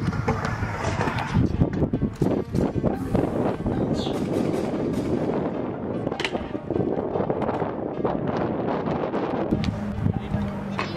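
A stunt scooter rolling and clattering over a concrete skate park, with wind buffeting the microphone and music underneath.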